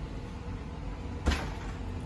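A house door being opened: one sharp latch click about a second in, over a low, steady room hum.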